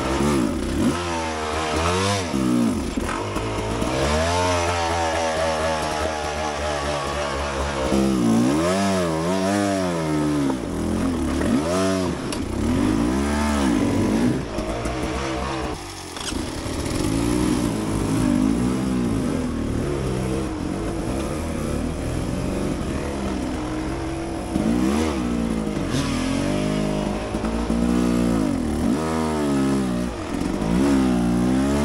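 Beta 300 RR two-stroke dirt bike engine revving up and down in repeated short throttle bursts, working at low speed over rocky ledges.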